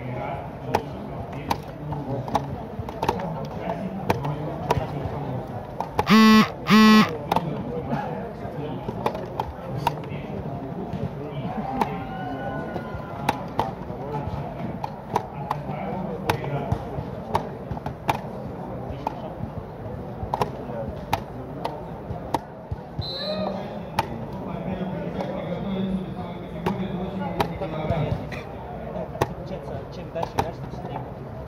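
Chess pieces set down on the boards and analog chess clock buttons pressed during blitz play: frequent sharp clicks and knocks over background chatter. About six seconds in come two loud, short beeps, each under half a second, the loudest sound here.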